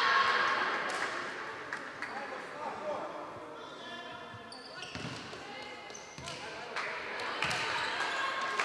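Players' voices calling out in a large, echoing sports hall, loudest at the start and fading. In the second half a volleyball bounces a few times on the wooden floor, sharp knocks a second or so apart.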